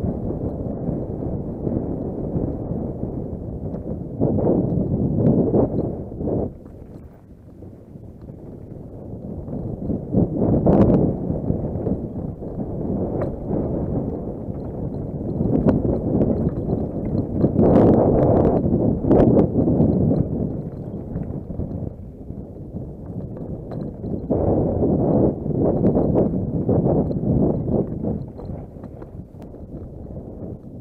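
Downhill mountain bike rattling and clattering over a rocky, stony trail: tyres on loose stones and the bike knocking over the rough ground. The noise comes in uneven surges, louder and quieter, with occasional sharp clacks.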